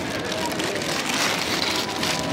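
Paper kebab wrapper crinkling, with crowd chatter in the background.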